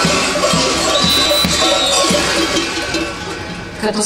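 Many large metal kukeri bells hung on the belts of fur-costumed masked dancers clanging together in a dense, continuous jangle as the dancers move. The sound eases off shortly before the end.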